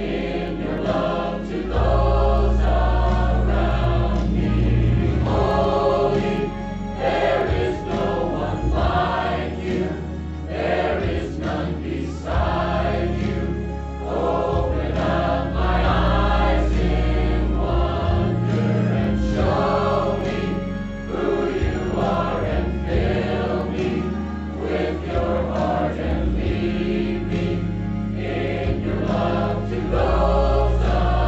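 Mixed choir of men and women singing together over an instrumental accompaniment with long held bass notes.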